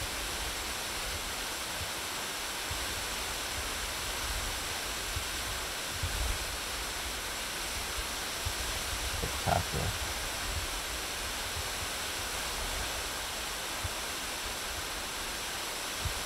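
Waterfall rushing: a steady, even hiss of falling water, with a faint brief knock or two partway through.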